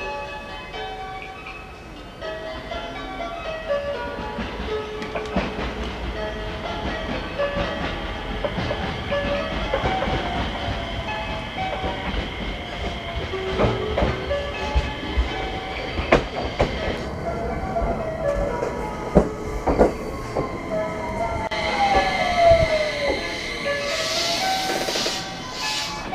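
An electric train pulling into the station platform: a rising rumble with sharp clicks of the wheels over rail joints, and the motors' whine falling steadily in pitch as it brakes to a stop near the end. An electronic chime melody plays at first.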